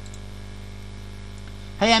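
Steady electrical mains hum in the recording, low and even, with a faint hiss above it; a man's voice starts near the end.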